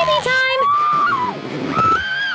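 A woman's acted cries of labor pain: several long, drawn-out wails that rise and fall in pitch.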